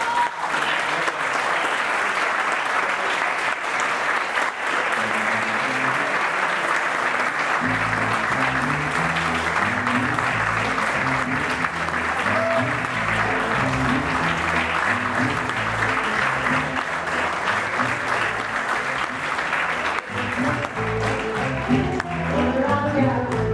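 Audience applauding steadily, with music starting up underneath about seven seconds in, its low bass notes stepping from pitch to pitch.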